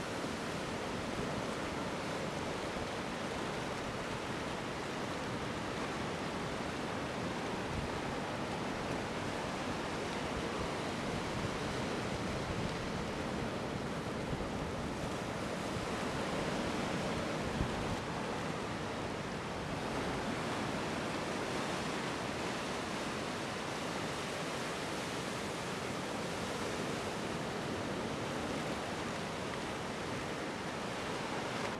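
Ocean waves breaking and whitewater washing toward the shore in a steady, continuous rush, with some wind buffeting the microphone.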